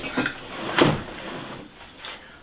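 Metal amplifier case being turned and slid on a wooden table-top: handling scrapes with two knocks, one just after the start and one just under a second in, then fading.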